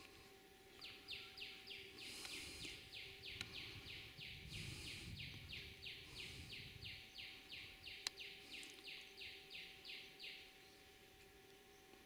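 A bird calling faintly: one long, even series of about thirty short, high, rasping notes, roughly three a second, that stops about ten seconds in.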